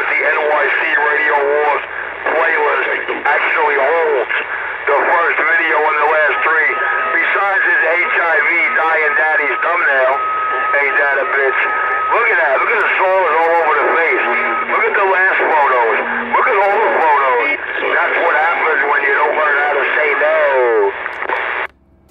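CB radio speaker playing voices coming in over the air, thin and narrow-band, with a steady whistle that comes and goes through the middle. The transmission cuts off just before the end.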